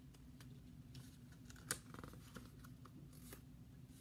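Faint handling of a small hardcover picture book as its page is turned: light rustles and ticks, with one sharper click a little under halfway through.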